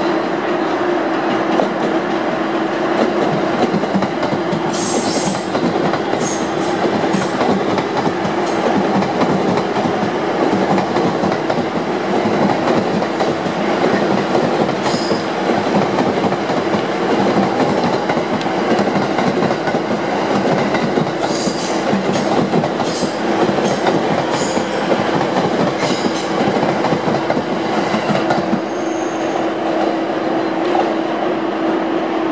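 A JR East E231 series electric multiple unit rolling past at low speed over rail joints and points, a steady rumble with a low hum underneath. Wheel clicks and short high squeals come now and then, with a cluster of them past the middle.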